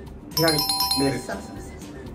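A bright two-note chime sound effect, a higher ding followed by a lower one like a doorbell ding-dong, ringing for about a second, mixed over speech and background music.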